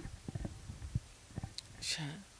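A short pause in a woman's speech: a few faint, short low knocks and mouth noises, then a brief hiss near the end as she starts talking again.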